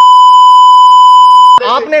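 A loud, steady single-pitch bleep tone laid over the broadcast, of the kind used to censor a spoken word, cutting off abruptly about one and a half seconds in as a man's speech resumes.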